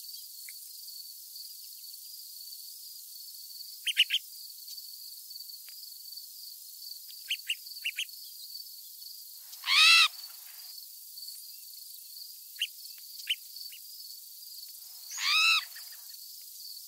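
Wild birds calling: clusters of short, sharp chip notes, and twice, about ten seconds in and near the end, a louder drawn-out arched call. A steady high insect trill runs underneath.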